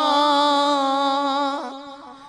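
A male naat reciter holding a long sung note at the end of a line, his voice wavering slightly on the held pitch with no instruments. The note fades away in the last half second with a short lower note.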